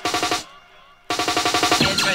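Jungle track with a rapid, evenly spaced snare drum roll. The roll drops out for about half a second, comes back in, and the full beat follows at the end.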